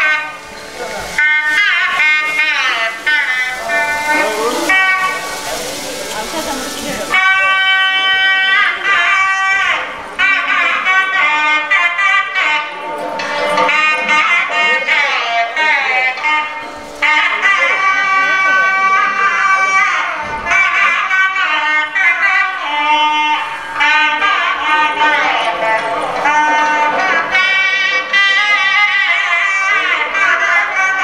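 South Indian temple music: a reedy double-reed wind instrument, a nadaswaram, playing a long, bending melody with held notes. A bright hiss lies under the first several seconds and cuts off suddenly.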